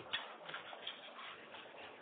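Faint hiss of a telephone conference line in a pause, with a few faint clicks in the first second.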